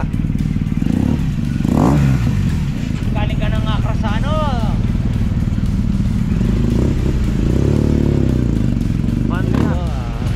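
BMW motorcycle engine running at idle, with a quick blip of the throttle about two seconds in and a longer rev up and back down near the end.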